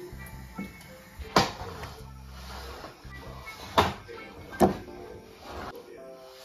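Three sharp knocks of kitchen utensils against cookware, about a second and a half in, near four seconds and just after, over steady background music.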